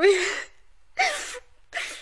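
A woman sobbing: a short breathy sob about a second in and a gasping in-breath near the end.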